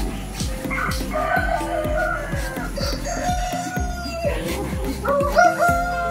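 Roosters crowing, three long calls one after another, with background music playing underneath.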